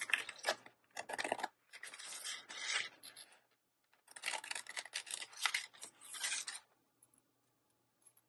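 Scissors cutting a sheet of glitter paper, with the paper rustling as it is turned, in several bursts of snipping that stop about two-thirds of the way in.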